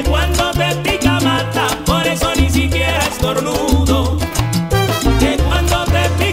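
Salsa music played by a full salsa orchestra, with a repeating bass line and steady percussion.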